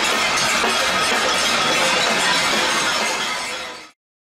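Protest crowd banging pots and pans (a cacerolada): a dense, steady metallic clatter that cuts off just before the end.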